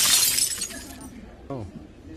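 Glass-shattering sound effect: a bright crash right at the start that fades out over about half a second.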